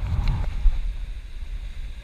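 Wind buffeting the microphone: an unsteady low rumble.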